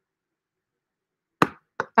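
Silence, then two short knocks about half a second apart, the first louder: a ring sizing mandrel being handled with a ring slid down onto it.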